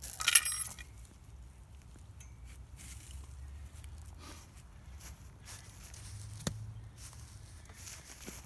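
A brief metallic clink with a high ringing just after the start, followed by a low steady rumble and one sharp click a few seconds later.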